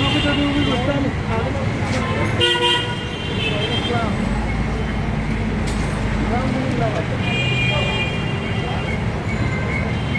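Busy street traffic with vehicle horns honking: a short horn blast about two and a half seconds in and another about seven and a half seconds in, over steady traffic noise, a low engine rumble in the middle and people's voices.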